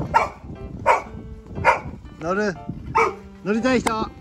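Golden retriever barking excitedly: about six barks and yelps in quick succession, the longer ones rising and falling in pitch like whining yowls.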